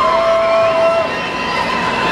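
Crowd of fans shouting and calling out, several voices holding long, high shouts over the crowd noise.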